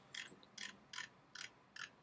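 Faint, evenly spaced clicks, about two and a half a second, from a computer's controls as long program output is scrolled.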